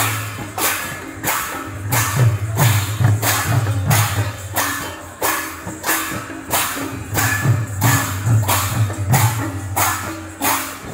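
A kirtan ensemble of barrel drums (mridanga) and large brass hand cymbals playing a steady, driving rhythm. The cymbals clash about twice a second over the deep, booming drum strokes.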